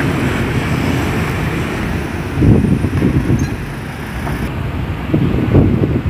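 Wind buffeting the microphone of a handheld phone: a loud, uneven low rumble that swells about two and a half seconds in and again near the end, over the hum of street traffic.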